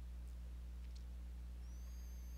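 Quiet room tone carrying a steady low electrical hum. There is a faint click about a second in and a faint, thin, high squeak near the end.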